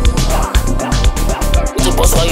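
Music with a steady beat and deep bass.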